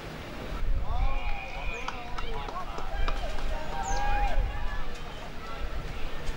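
Spectators and players shouting and calling out across the ground during play, several voices overlapping, starting about half a second in, over a low rumble of wind on the microphone.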